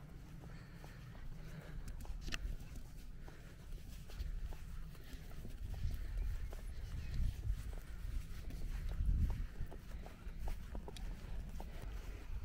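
Footsteps walking through grass, with wind rumbling on the microphone in gusts.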